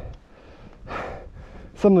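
A man's audible breath in, short and airy, about halfway through, taken between spoken phrases; speech starts again near the end.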